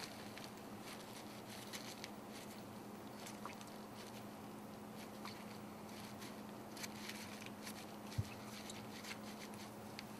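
Faint, scattered rustling and light dabbing of a paper towel being pressed into a preserved frog's opened body cavity by gloved hands, over a steady low hum. One soft thump comes about eight seconds in.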